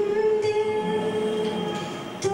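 A woman singing one long held note into a microphone, fading away near the end.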